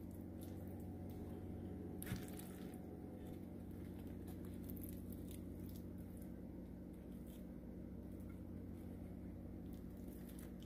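Faint, soft squishing and scraping of a wooden spoon spreading tuna salad onto toasted bread, with one sharper click about two seconds in, over a steady low hum.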